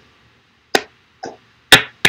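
Four short, sharp clicks in an otherwise quiet pause on a video-call line, about half a second apart, starting a little under a second in.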